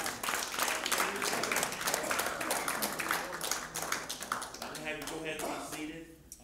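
Applause: many hands clapping irregularly, with voices talking over it, dying away near the end.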